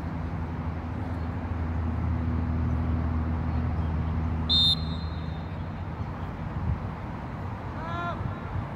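One short, sharp referee's whistle blast about halfway through, the loudest sound here. Under it, a low steady engine hum fades out soon after, and a short shout comes right at the end.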